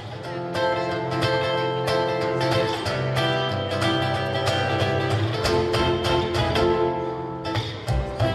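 Live folk band playing an instrumental passage on acoustic guitar and fiddle, with no singing.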